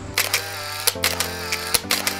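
Background music with held notes, overlaid with several sharp camera-shutter clicks, about four in two seconds, used as sound effects for the photos.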